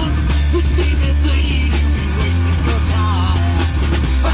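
Live rock band playing loud: distorted electric guitar and bass over a drum kit with steady crashing cymbals.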